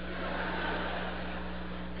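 Steady hiss of background noise in the hall, with a low electrical mains hum underneath and no voice.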